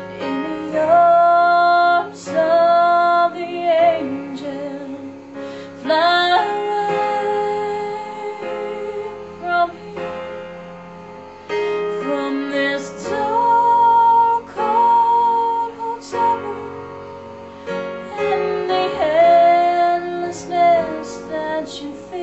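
A woman sings a slow song with instrumental accompaniment, in phrases of long held notes with vibrato.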